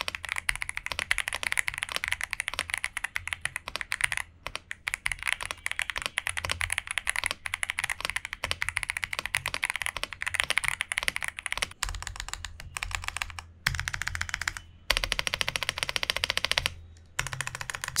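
Fast, continuous typing on a Monka (Xinmeng) 3075 Pro V2 gasket-mounted mechanical keyboard, fitted with a polycarbonate plate, Monka Sea Salt switches and double-shot PBT Cherry-profile keycaps, with a few short pauses.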